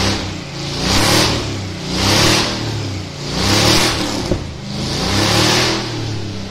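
Chevrolet pickup truck's engine revving up and down repeatedly as its rear tire spins in a burnout. The tire's screech swells with each rev, about four times.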